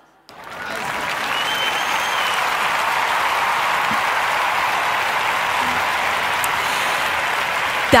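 Applause: steady clapping that starts a quarter-second in and holds at an even level throughout.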